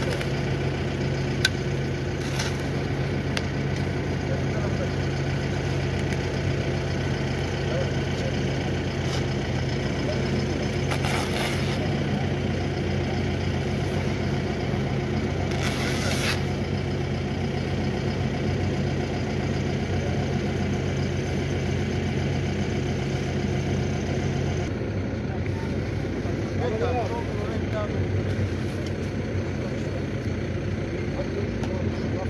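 A truck's engine idling steadily, with low voices talking; the engine hum drops away about 25 seconds in.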